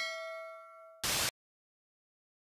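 A bell-like ding from a subscribe-button animation, ringing with several pitches and fading over about a second. It is cut off by a short burst of hiss about a second in.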